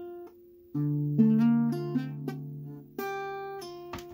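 Acoustic guitar, capoed at the first fret, picking single notes one after another so that they ring together. A low string starts it about a second in, higher notes join over the next second and a half, and a new set of notes is picked about three seconds in.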